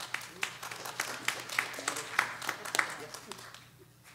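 A small congregation applauding: scattered hand claps that die away about three and a half seconds in.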